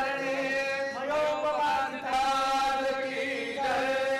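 Male voices chanting a Hindu devotional prayer in long held notes, sliding in pitch between phrases about a second in and again near the end.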